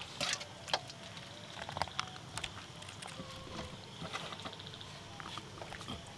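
Faint scattered clicks and soft rustles of food being eaten by hand off a banana leaf, over a low steady hiss.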